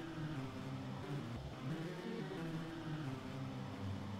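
A synth melody from an Ableton Live Sampler instrument (the "Abrasive" preset) plays quietly, a line of held notes changing pitch in steps. These are MIDI clips with the same notes but different envelope settings, chained so that each pass sounds a little different.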